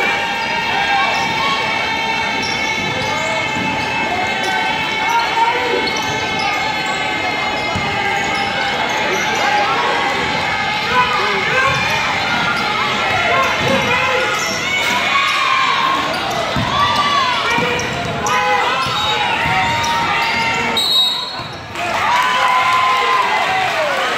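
A basketball being dribbled on a hardwood gym floor, with sneakers squeaking and a crowd talking around it in a large, echoing gym. The squeaks grow frequent in the second half, and the din dips briefly near the end.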